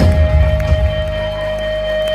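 Live rock band playing on stage. The drums and cymbals drop out about half a second in, leaving a single held note over the bass in a break in the song.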